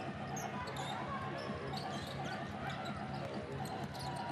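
Arena sound of a live professional basketball game: a steady crowd murmur, with a basketball being dribbled and short sneaker squeaks on the hardwood court.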